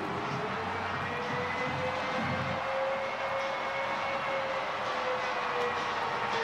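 Stadium crowd cheering a home touchdown, a steady roar with one long held note sounding over it.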